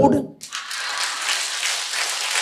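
Audience applauding: clapping from many hands starts about half a second in and carries on steadily.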